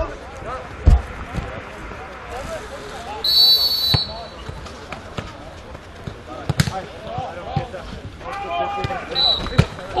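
A football kicked on artificial turf: a sharp thud about a second in, then more kicks, while players shout across the pitch. A shrill whistle blast sounds between about three and four seconds in, and a shorter one near the end.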